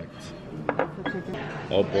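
A few sharp clinks of tableware on a table, about two-thirds of a second and a second in, over soft background music.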